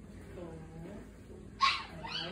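Small dog whining softly, then giving one short, sharp, high yip near the end.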